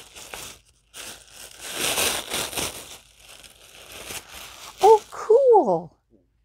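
Tissue paper crinkling and rustling in bursts as it is handled and pulled away from a gift. Near the end, a woman makes a few short vocal sounds that fall in pitch.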